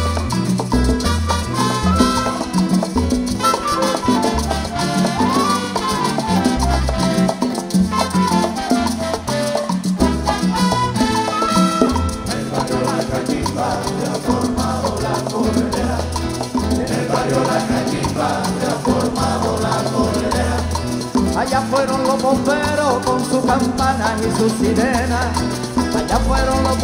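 Live Latin folk band playing an instrumental passage of a Cuban-style son: acoustic guitars and lutes over a steady conga and bongo rhythm, with a melody line moving above.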